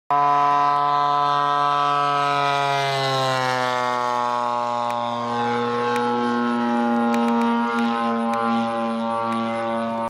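Small engine of an RC model biplane in flight, a steady buzzing note whose pitch drops around three seconds in as the plane passes by, then holds with a slight waver.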